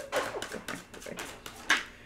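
A dog whimpering briefly, over the quick clicks of tarot cards being shuffled, with one sharper card click near the end.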